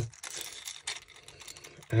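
Hard plastic popper lures handled and turned in the fingers: faint scratchy rubbing with a few light clicks of plastic against plastic.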